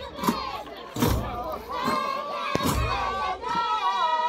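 Ahwash: a group of voices singing together loudly, with deep strikes of large hand-held frame drums about once a second. Near the end one high note is held for a while.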